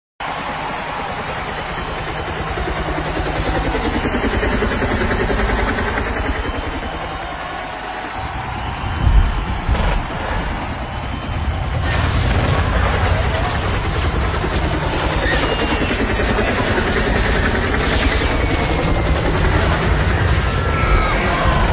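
Live concert arena intro: a dense, steady rumble with crowd noise, broken by sudden loud bangs about nine and ten seconds in, like staged gunfire or explosion effects.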